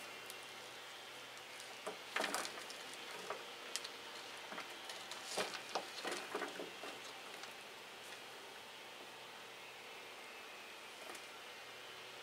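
Handling sounds from a small plastic plant pot being knocked out and an orchid pulled free: scattered light taps and rustles, with chunks of coconut husk potting mix falling and pattering onto the bench, in one cluster about two seconds in and another around five to seven seconds in.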